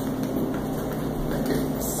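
A steady low mechanical hum, with faint footsteps on a tile floor.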